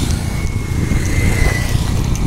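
Steady low rumble of moving-vehicle and wind noise, with a faint thin whine, falling slightly in pitch, through the middle.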